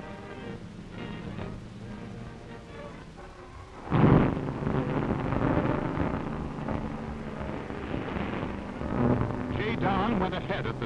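Film soundtrack music, joined about four seconds in by a sudden loud rushing roar that carries on to the end.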